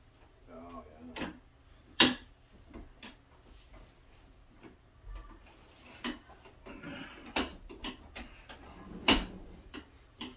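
Clicks and knocks from the metal legs of a white folding table being worked and folded as it is taken down, with a sharp knock about two seconds in and another near the end.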